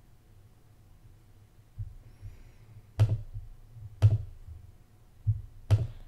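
Three sharp clicks from working a Surface Pro X through Photoshop's export menus, about three, four and five and a half seconds in. Each click carries a dull low thump, and a few fainter thumps sit between them over a faint low hum.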